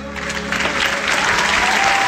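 Theatre audience breaking into applause, swelling loud about half a second in, as the orchestra's final held chord fades out underneath.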